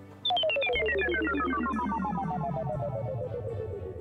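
Synthesized sci-fi spaceship effect: a rapidly pulsing electronic tone that starts a moment in and falls steadily in pitch for about three and a half seconds, over a steady low synth drone.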